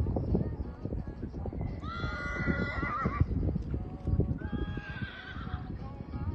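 A horse whinnying twice: a long call with a wavering pitch about two seconds in, then a steadier one near the end. Dull thuds of hooves cantering on a sand arena run underneath.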